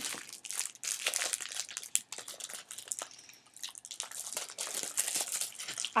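Memo pad paper crinkling and rustling as the pads are handled, in a run of short scratchy rustles that ease off briefly midway and pick up again.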